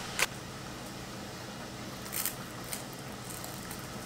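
Quiet kitchen room tone with a steady low hum, a sharp click just after the start and a brief rustle about two seconds in.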